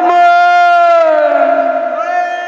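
A singer holding one long, loud sung note into a microphone, amplified; the pitch stays level at first, then sinks slowly through the second half.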